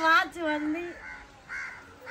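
A woman talking, then two short hoarse calls, one about a second in and one shortly before the end.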